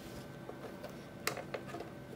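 Light handling noise as fabric and a plastic invisible zipper are moved about on a sewing machine bed: a few short clicks in the second half over a faint steady hum.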